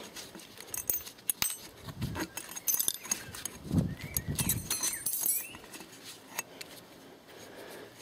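Cut steel bicycle spokes clinking and jingling against each other and the metal hub motor as they are worked out of its flange by hand: irregular small metallic clicks, thinning out near the end.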